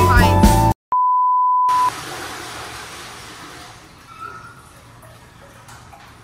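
Background music cuts off abruptly, and after a moment of silence a steady high bleep tone sounds for about a second. It is followed by a hiss of rushing water from a toilet flushing, fading away over the next few seconds.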